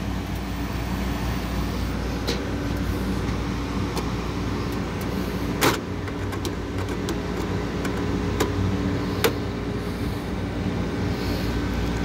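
Carrier rooftop package unit running on a first-stage cooling call, its blower and compressor giving a steady mechanical hum. A few sharp clicks sound over it, the loudest about halfway through.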